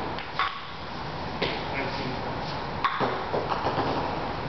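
Table tennis ball clicking off paddle, table and concrete floor: three sharp clicks about a second apart, then a quick run of small bounces near the end.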